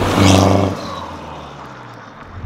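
Stage 2 remapped Hyundai Verna 1.6 CRDi four-cylinder turbo-diesel, with a performance downpipe and race muffler, accelerating hard past at speed. It is loudest in the first half-second as it goes by, then fades as it pulls away.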